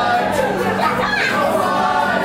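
A group of mixed men's and women's voices singing a repeated chorus together, loosely and unevenly in pitch.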